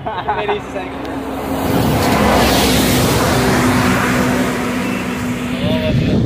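A bus passing close by on the road. Its engine and tyre noise swells about a second in and stays loud, with a steady hum running through it.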